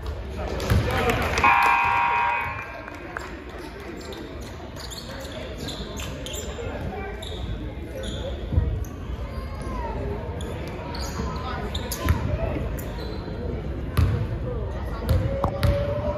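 Basketball bouncing on a gym's hardwood court, with a series of sharp knocks and voices calling out in the echoing hall. A short steady tone, the loudest thing in the stretch, sounds about a second and a half in.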